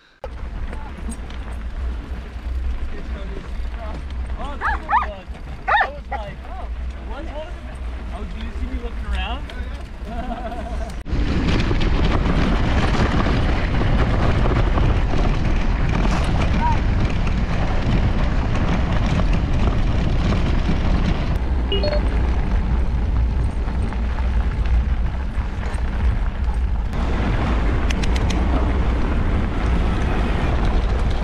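Wind rumbling on a ride camera's microphone, with faint voices in the first ten seconds. About eleven seconds in it jumps to a louder, steady rush of wind and rolling noise as the off-road handcycle rides along a dirt road.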